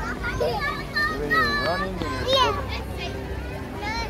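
Young children's voices: high-pitched chatter and calls that rise and fall, with several sharp squeals in the middle, over a steady low background hum.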